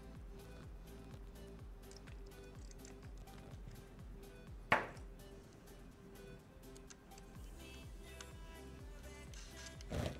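Quiet background music with a steady beat, and one sharp click about halfway through.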